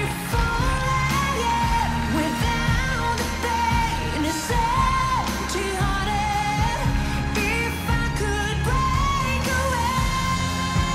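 A female lead vocalist sings a pop ballad live, holding long sustained notes over a band with string players.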